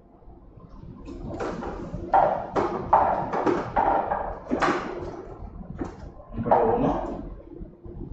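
Plastic balls tumbling inside a hand-turned clear lottery drum, a run of irregular clattering knocks.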